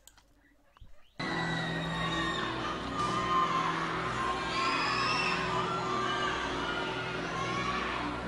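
Near silence for about a second, then a live concert recording starts suddenly: the held notes of a song's instrumental opening under a crowd cheering and whistling.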